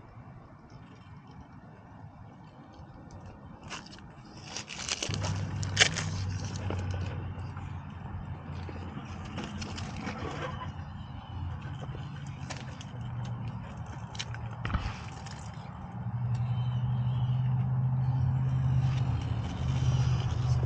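An RC rock crawler's electric motor and geared drivetrain humming at low pitch as it creeps over rock. Its tyres and chassis scrape and click against the stone. The hum starts about five seconds in and gets louder and slightly higher near the end.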